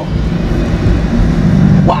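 Alfa Romeo 4C's mid-mounted 1.75-litre turbocharged four-cylinder engine running at speed on track, heard from inside the cabin as a loud, steady drone with little change in pitch.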